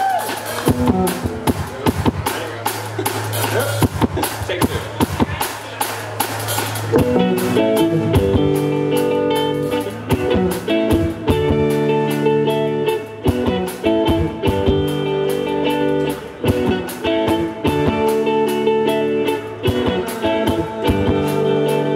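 Live rock band playing: electric guitar, electric bass and a drum kit with a steady beat. For about the first seven seconds the guitar plays loosely over the drums, then the full band comes in with sustained chords.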